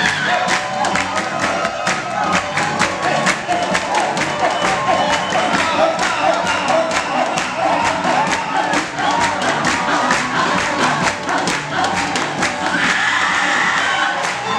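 Live church choir singing an upbeat song, voices over a quick, steady beat of percussion and hand claps, with cheering from the crowd. A high held tone rises over the music near the end.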